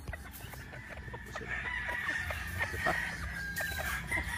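Gamefowl chickens clucking with scattered short calls. In the second half a long steady high call is held, like a distant rooster's crow.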